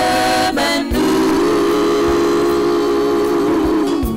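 Group of women singing a hymn. There is a short break about a second in, then one long held note that ends just before the close.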